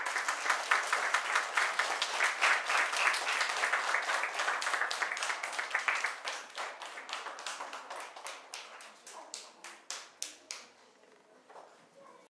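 A group of children clapping. The applause is dense for about six seconds, then thins to scattered single claps that die out near the end.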